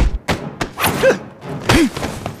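Hand-to-hand fight sound effects: several quick punch and block impacts, with short effortful grunts from the fighters about a second in and near the end.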